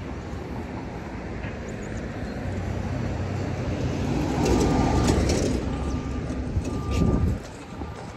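Street traffic: a passing vehicle's rumble builds over several seconds and cuts off abruptly near the end.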